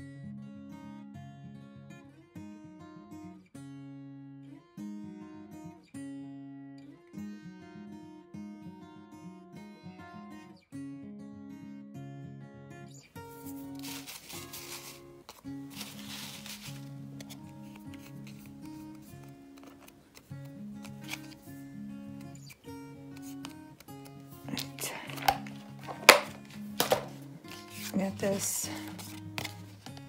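Background music with steady plucked notes. Over it, paper and craft supplies are handled in the second half, with a cluster of sharp clicks and knocks near the end.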